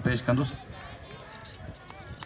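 A man speaking in Sindhi briefly ends a phrase, then a faint outdoor background with distant voices.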